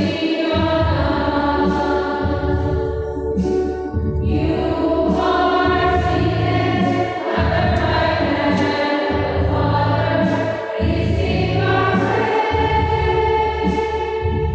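Choir of many voices singing a hymn together, holding long notes in phrases separated by short breaks every two to three seconds.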